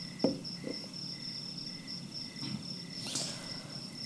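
Faint, steady high-pitched chirping of an insect, cricket-like, with a single soft click about a quarter second in.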